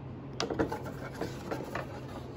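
Handling noise of a glass bottle and its cardboard box: irregular short rubs, scrapes and light knocks, starting about half a second in, over a faint steady hum.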